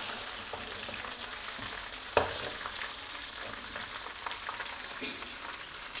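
Chicken pieces sizzling steadily in hot oil in a black iron karahi, fried through and ready to come out. One sharp knock about two seconds in, with a few faint ticks later.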